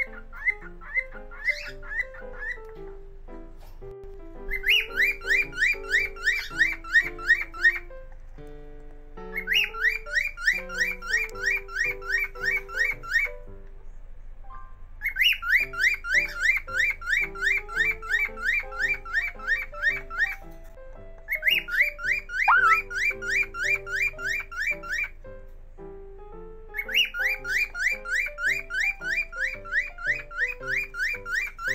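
Cockatiel calling in runs of rapid, evenly spaced chirps, about six a second, each run lasting three to five seconds with short pauses between. Soft background music plays underneath.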